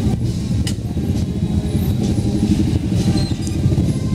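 Several small motorcycle engines running at low speed as a slow procession passes close by, a steady low rumble.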